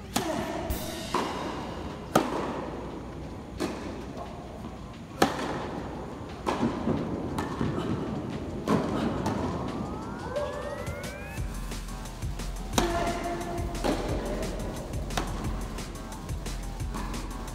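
Tennis balls struck by rackets in a rally, sharp hits every one to three seconds ringing in an indoor hall, over background music.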